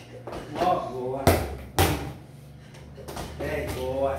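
A ball hitting a hard tiled floor twice, about half a second apart, with short bits of voice before and after.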